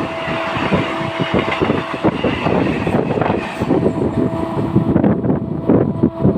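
MEMU electric train coaches running past close by, wheels rumbling and clattering on the rails with a steady electric hum. About five seconds in, the sound turns to gusty wind buffeting the microphone.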